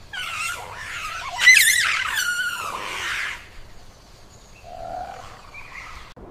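Monkeys giving harsh, screeching calls whose pitch bends up and down. The calls are loudest about a second and a half in and die away after about three seconds. A faint short call follows near the end.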